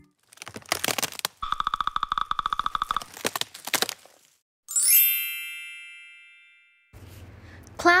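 A sound-effect run of cracking, creaking clicks, with a buzzing creak of rapid even pulses in the middle. About five seconds in, a single bright chime rings out and fades away over about two seconds.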